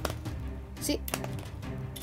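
A few sharp plastic clicks as a Lego six-barrel stud shooter is fired by hand, studs shooting out and landing on the floor.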